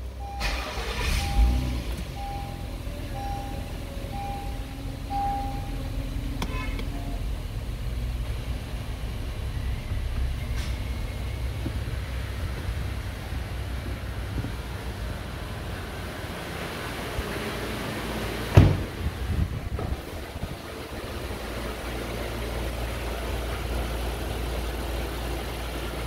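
Honda Pilot's 3.5-litre V6 running at a steady idle, heard from inside the cabin as a low rumble. Over it a dashboard warning chime beeps about once a second for the first six seconds. A single sharp knock comes about two-thirds of the way through.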